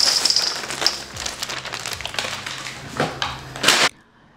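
Honey graham cereal squares pouring from a plastic bag into a large stainless steel mixing bowl: a continuous dry rattling patter of many small pieces with the bag crinkling. It cuts off suddenly near the end.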